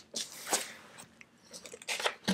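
Faint rustling and crackling of paper pages being handled, strongest at the start and dying away.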